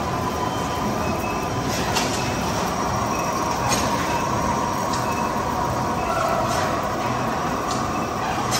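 A vertical lathe cutting a large steel gear blank: steady machine noise with a thin whine from the cut, and scattered sharp clicks as metal chips fall.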